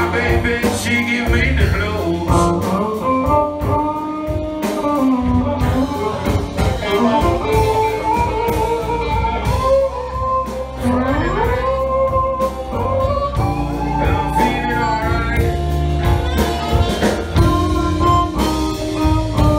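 Live band playing a bluesy groove on drum kit, bass and electric guitar, with a lead melody line that slides between notes.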